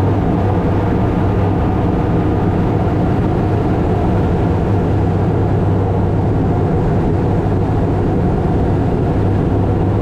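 Crop-duster airplane's engine and propeller running steadily at power as it climbs out after takeoff, heard from inside the cockpit as a loud, even drone with a strong low hum.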